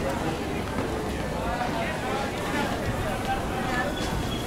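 Passers-by talking, their voices over the steady background noise of a busy pedestrian street.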